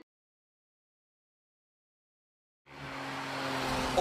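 Silence for about the first two and a half seconds, then the Smart Roadster's small turbocharged three-cylinder engine running steadily under a haze of wind and road noise, growing louder as it fades in.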